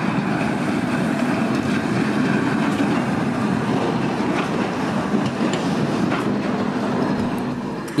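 Low-floor electric city tram passing close by on street track, its wheels rolling on the rails in a steady run that eases slightly near the end.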